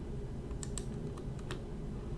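A handful of short, sharp clicks, irregularly spaced, over a steady low hum.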